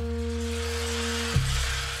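Background music: sustained drone tones held over a steady hiss, with the low notes shifting a little past halfway through.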